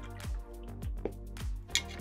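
Background music with a steady beat, about two beats a second over held low notes.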